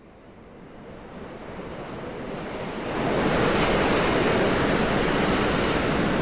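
Rushing noise of a train passing close by, swelling over the first three seconds and then holding steady.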